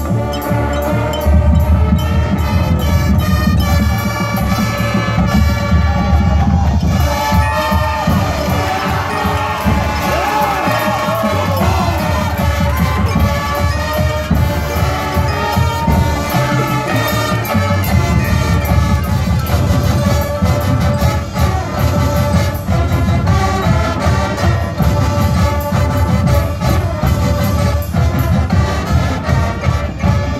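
High school marching band playing its field show music: full brass and drumline, loud and continuous.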